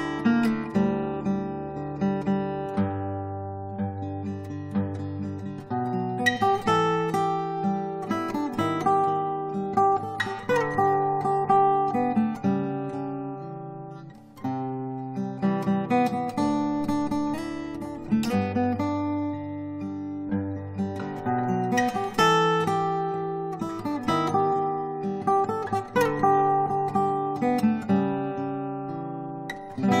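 Solo acoustic guitar playing an instrumental piece: plucked chords over held bass notes, changing every couple of seconds, with a brief drop in level about halfway through before the next chord.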